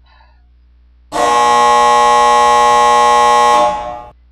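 Game-show style 'wrong answer' buzzer sound effect: one loud, steady, flat-pitched tone that starts abruptly about a second in and lasts about two and a half seconds.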